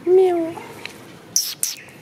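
A cat meowing once, a short, slightly falling call at the start, then two short, sharp, high-pitched hissy sounds about a second and a half in.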